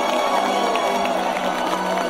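A crowd cheering and clapping, with music playing underneath.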